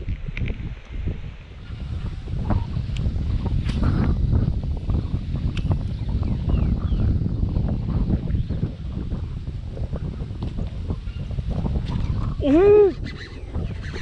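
Strong wind buffeting the microphone: a heavy, gusty low rumble. A brief voice is heard near the end.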